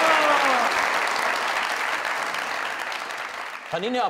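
Studio audience applause and clapping, dying away gradually over the few seconds.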